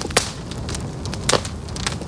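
A few sharp clicks over a low, steady rumble.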